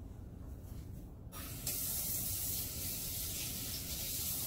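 Sink faucet turned on a little over a second in, its stream of lukewarm water running steadily into the sink to rinse a dental appliance held under it, the flow growing fuller a moment after it starts.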